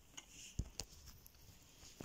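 A few faint clicks and taps of plastic Lego pieces being handled, with quiet room tone between them.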